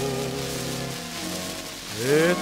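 Quiet orchestral passage on an old 78 rpm shellac record: a held note with vibrato fades out about half a second in, and the orchestra then holds a soft chord, all under steady surface hiss and crackle.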